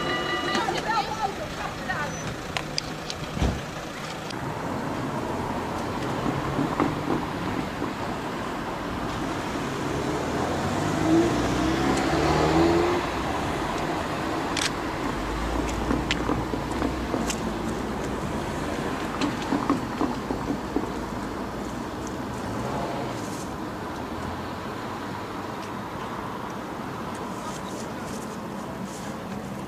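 Road traffic passing, with people talking in the background.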